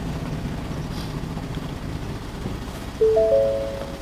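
Inside the cabin of a 2015 Ford Edge creeping forward, a low steady hum. About three seconds in, a rising three-note chime sounds and is held: Park Out Assist's alert telling the driver to take control of the steering wheel.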